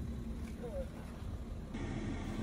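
Faint, steady low rumble and hum of a car engine idling with the air conditioning running on max. The background tone changes abruptly near the end.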